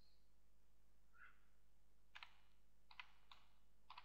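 Faint computer keyboard keystrokes: about five separate taps in the second half.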